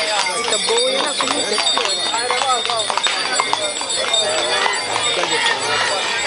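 A horse's hooves clip-clopping at a walk on a paved road, over the chatter of a crowd of people walking alongside.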